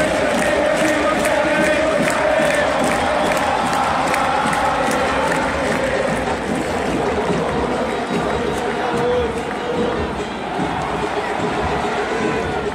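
Stadium crowd of football fans singing a chant together, a large mass of voices with a regular beat under it in roughly the first half.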